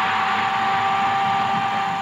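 Stadium crowd cheering as a goal goes in, with a steady horn-like tone held over the noise; the cheering starts to fade near the end.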